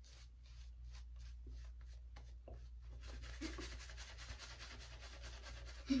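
Shaving brush working lather onto the face: faint bristly rubbing strokes that grow denser and more continuous about halfway through.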